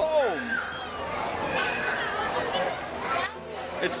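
Crowd of children playing and calling out, with people chattering around them; one voice gives a cry that falls sharply in pitch right at the start.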